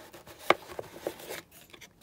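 Plastic motor cage of a Numatic Henry vacuum being pressed into place over the motor: one sharp click about half a second in, then a few lighter clicks and rubs.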